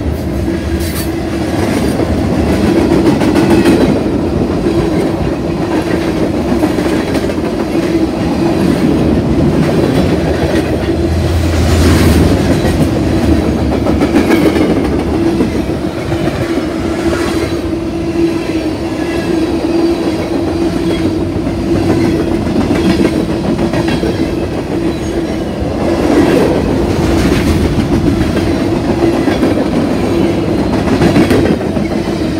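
Freight train cars rolling past close by: a loud, steady rumble of steel wheels on the rails with clickety-clack over the rail joints and a steady droning tone underneath.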